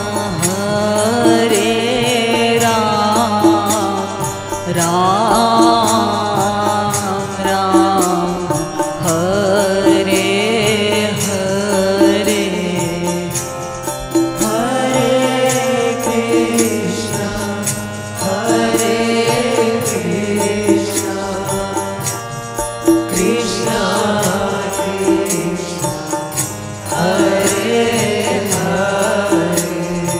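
Hindi devotional kirtan sung by a man and a woman, the melodic phrases rising and falling every few seconds over a steady sustained drone.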